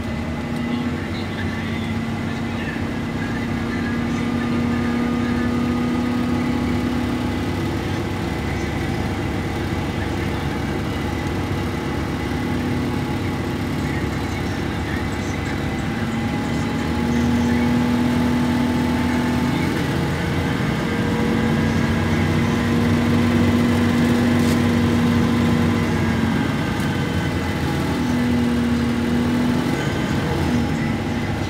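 Inside a Plaxton Centro single-deck bus under way: the engine and drivetrain drone steadily, with a hum that fades and comes back several times as the bus pulls away and eases off. It grows louder from about halfway through.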